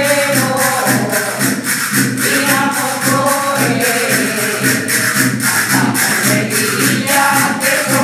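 Group singing of a Castilian seguidilla, women's and children's voices together with an older woman's voice, over steady rhythmic scraped and shaken percussion and the low drone of two wooden zambombas (friction drums).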